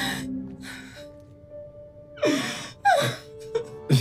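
A woman crying: a sharp gasping breath, then two falling-pitched sobs about two seconds in, over soft, sustained background music.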